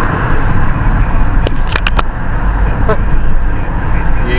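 Car cabin driving noise picked up by a dash cam: a steady low road and engine rumble, with a few sharp clicks between one and a half and two seconds in.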